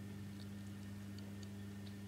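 Faint steady low electrical hum with a few faint, irregular small ticks scattered through it.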